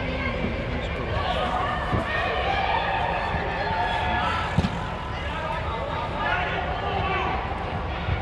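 Indistinct shouts and calls from youth soccer players and spectators, echoing under an inflated sports dome over a steady low rumble, with one sharp thump of a soccer ball being kicked a little past halfway.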